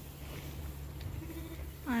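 Quiet barn background with a steady low hum, and a faint, short sheep bleat from the pens about halfway through.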